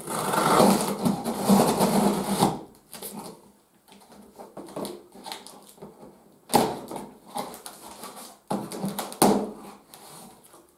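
Packing tape being ripped off the top of a cardboard box in one long rasp lasting about two and a half seconds. This is followed by cardboard rustling and three sharp knocks from the box flaps being worked open.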